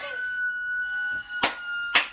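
A woman's long, high-pitched held squeal on one steady note, with two sharp smacks about half a second apart in its second half.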